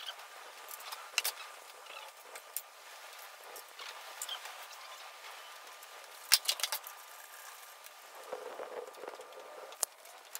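Wrench on the oil drain plug of a Toyota 2JZ-GE engine's oil pan: scattered metallic clicks, with a tight cluster of sharp clicks a little past the middle as the plug is worked loose. Near the end, oil starts to run into a plastic drain pan.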